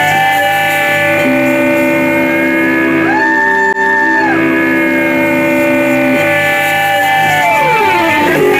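A live psychedelic rock band playing electric guitar, bass and keyboard, holding long sustained chords with notes sliding in pitch near the start and end.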